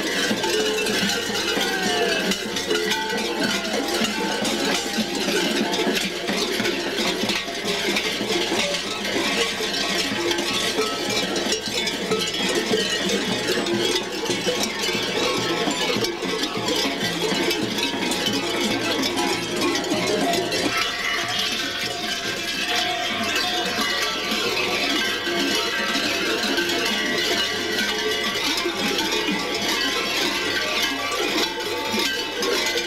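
Many large bells worn by kukeri-style mummers clanging continuously as they dance, mixed with folk music.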